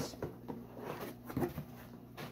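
A cardboard box being handled on a lap and its lid opened: several short, light scrapes and taps of cardboard spread through the moment.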